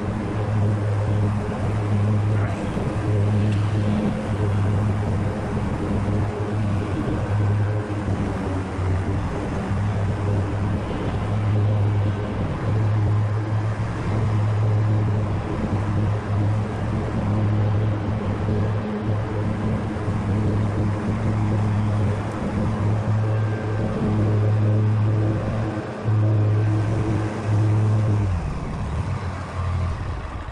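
Grasshopper 125V61 zero-turn riding mower running steadily while cutting grass: a constant engine drone with the deck blades spinning beneath.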